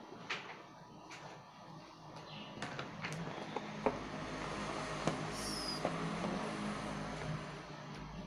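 Cardboard smartphone box being opened by hand: the lid scraping and sliding off with light rustling, and scattered small taps and clicks. Quiet, the scraping growing a little louder after about four seconds.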